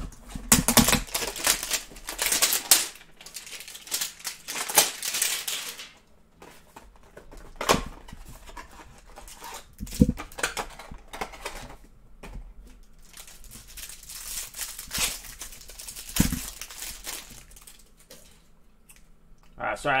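A cardboard hanger box of Mosaic basketball trading cards being torn open, with its plastic-wrapped cards rustling and crinkling. The tearing and rustling come in dense bursts for the first six seconds, then as scattered handling noises with a few sharp knocks.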